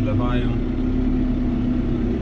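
John Deere 5070M tractor engine running steadily at low revs, about 1100 rpm, heard from inside the cab, with a constant drone.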